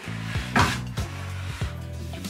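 Background music with a steady beat. About half a second in, a brief scrape as the fibre laser's base is slid and turned on a wooden workbench.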